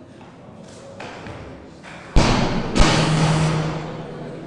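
A 140 kg barbell loaded with rubber bumper plates dropped onto the wooden lifting platform after a missed snatch: a heavy thud about two seconds in, a second thud as it bounces about half a second later, then the plates and bar rattle and ring on.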